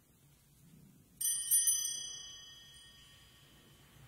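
Small altar bells rung with a quick shake, a bright metallic jingle of several strikes about a second in, fading away over about two seconds: the bell that signals the start of Mass.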